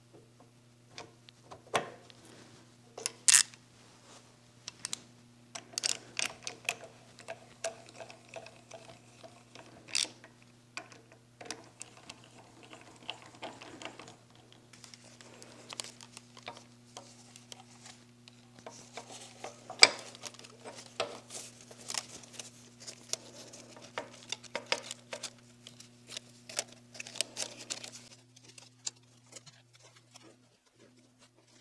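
Scattered light clicks, taps and rattles of small metal parts, oil lines and fittings being handled and fitted into a milling machine saddle, with two sharper knocks about three seconds in and near twenty seconds. A steady low hum runs underneath.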